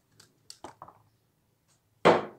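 A few faint, short clicks on a mini pool table, a little under a second in: the cue tip and the small balls knocking together as a shot is played.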